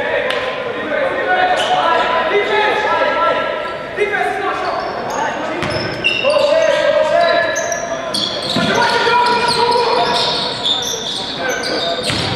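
Basketball game on a hardwood sports-hall court: a basketball bouncing as it is dribbled, shoes squeaking on the floor, and players and coaches calling out.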